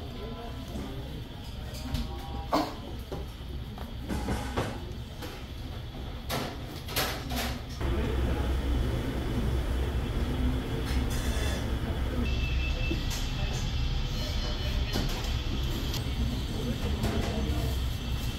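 Eatery ambience: a steady low hum with a few clicks and knocks in the first half, then a louder steady low rumble for the second half, under faint background voices.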